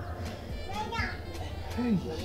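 Faint voices in the background over a low, steady music bed, with a short spoken 'hey' near the end.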